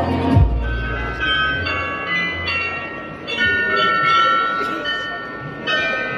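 The Glockenspiel bells in the tower of Munich's New Town Hall playing a tune: single struck notes, a couple a second, each ringing on under the next. A low thump comes just before the first notes.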